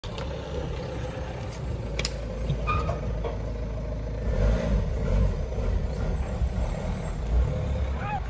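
Steady low rumble of motor traffic, with a few faint clicks.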